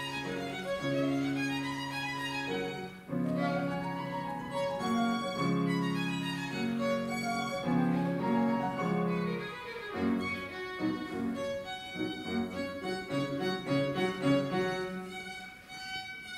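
String music led by a violin over lower strings, in long held notes that change every second or so; about ten seconds in, the accompaniment turns to short, detached notes.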